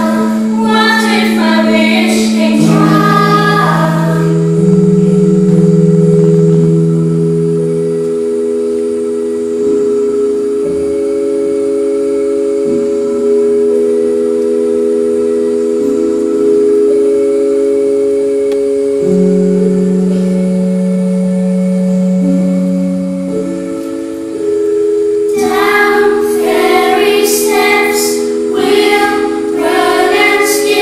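A children's choir singing over sustained keyboard chords. The voices stop about four seconds in, leaving a long stretch of steady held chords that change slowly. The choir comes back in about five seconds before the end.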